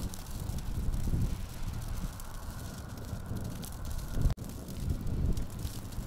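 Wind buffeting the microphone in an uneven low rumble, over a small wood fire burning and lightly crackling under a metal bucket smoker.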